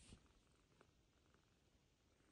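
Near silence, with a brief rustle of cloth and a hand moving close to the microphone at the very start.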